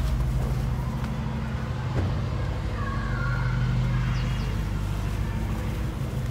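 Road traffic: a motor vehicle's engine running close by, a steady low hum throughout, with a single knock about two seconds in.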